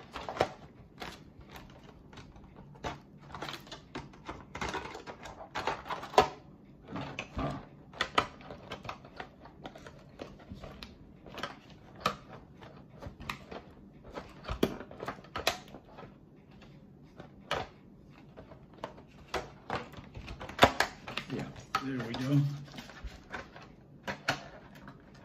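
Irregular clicks, taps and knocks of a Traxxas Bandit RC buggy's body shell being pressed and worked onto its chassis, with a few sharper knocks among them; the shell is not staying on.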